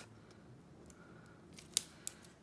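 Quiet handling sounds from a roll of glue dots and a wooden popsicle stick being worked by hand: a few faint ticks, then one sharp click near the end.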